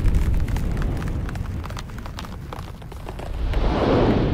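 Sound effects of a TV channel logo intro: a deep rumble full of crackling that slowly fades, then a swelling whoosh near the end that dies away.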